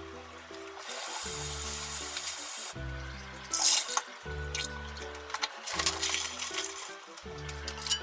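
Background music with a repeating bass line, over a kitchen tap running for about two seconds, then a brief louder splash of water. A few light metal clinks near the end as a small frying pan is handled.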